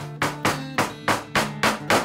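A small hammer tapping nails into pieces of tin on a collage panel: about six quick, sharp taps, roughly three a second, over background music.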